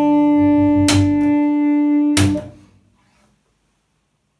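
Amplified blues harmonica holding one long final note over upright bass, with two accented hits about a second apart closing the tune. It all cuts off about two and a half seconds in.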